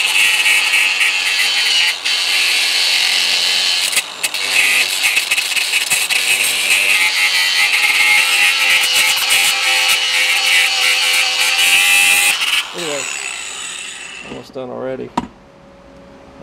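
Ryobi angle grinder grinding burnt rubber residue off a steel motor mount bracket down to bare metal: a loud, steady, high-pitched whine and grind, dipping briefly twice in the first few seconds. It is switched off about twelve and a half seconds in and fades away.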